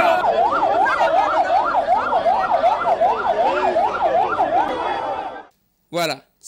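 Siren sounding in a fast up-and-down yelp, about two and a half sweeps a second, over crowd noise. It cuts off suddenly near the end.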